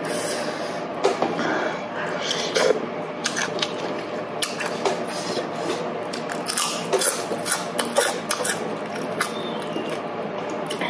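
Close-up eating sounds: chewing and lip smacking on rice vermicelli and lettuce, with irregular wet clicks and crackles that are busiest a little past the middle.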